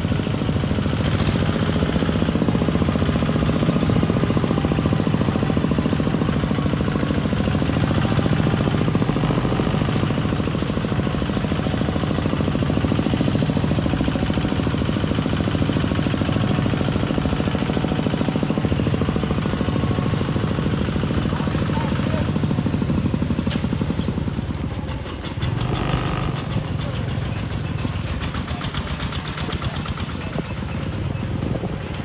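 Single-cylinder diesel engine of a two-wheel walking tractor chugging steadily as it pulls a loaded trailer over a rough dirt track, its beat easing and getting a little quieter about 25 seconds in.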